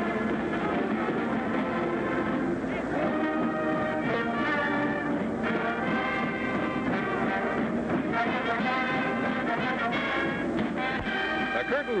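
Marching band playing, brass to the fore, in sustained chords that change every second or so, at a steady level, on an old film soundtrack with no sound above the middle highs.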